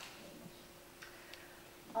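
Quiet room tone in a pause between sentences: a faint steady hum, with a few small clicks a little after a second in.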